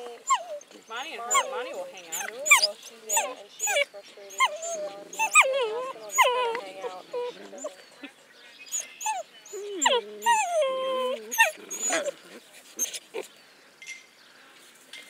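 Wolf pups whining and squealing: a rapid string of short, high whines that slide up and down, with a brief lull about eight seconds in.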